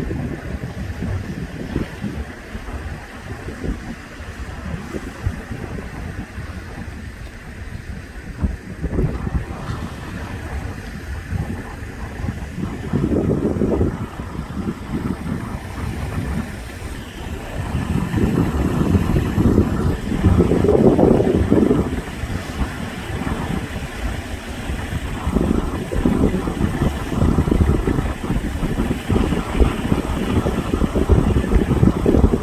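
Wind buffeting the microphone over the wash of sea waves breaking on coastal rocks. The rumbling noise swells louder several times.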